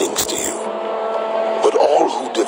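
Soundtrack of a dramatized audio Bible: a few sharp hits in the first half-second, then held, droning tones.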